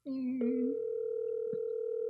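Telephone ringback tone heard through a phone's speaker as an outgoing call rings: a steady tone lasting about two seconds that then cuts off. It is preceded by a brief, lower, wavering tone as the call connects.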